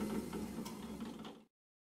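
Drill press motor and spindle winding down after being switched off: a faint, fading hum with a light tick a little over half a second in. The sound cuts off suddenly about one and a half seconds in.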